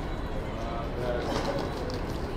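City street ambience: a steady low rumble with people's voices passing, clearest in the second half.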